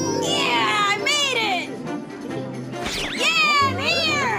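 Background music with two long, high, voice-like cries that slide down in pitch, the first just after the start and the second about three seconds in.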